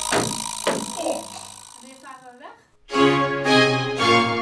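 A bottle is swung against a wooden boat set as in a ship christening: a couple of sharp knocks with voices calling out. Orchestral music with strings starts loudly about three seconds in.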